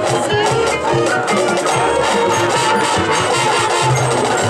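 High school marching band playing: winds with drums and front-ensemble percussion, with steady percussive strikes under held brass notes.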